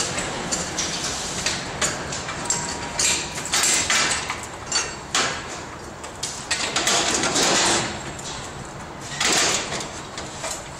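Metal knocks, clicks and scraping as a long metal channel section is shifted and handled on a steel dolly. Several longer scraping or rushing bursts come and go between the knocks.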